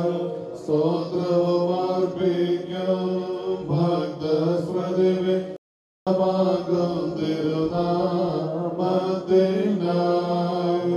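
A man's voice chanting a Syriac Orthodox liturgical hymn into a microphone, amplified through the church loudspeakers, in long held notes that step between pitches. The sound cuts out completely for about half a second just past halfway, then the chant resumes.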